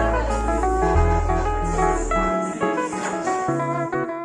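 Background music: an instrumental passage of a song with plucked guitar notes over a deep bass line; the bass drops out a little past halfway.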